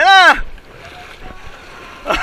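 A person's short, loud shout, its pitch rising then falling, lasting about a third of a second, followed by a steady wash of sea water and wind on the microphone.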